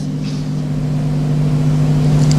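A steady low hum at a constant pitch, with a faint hiss over it, slowly growing louder.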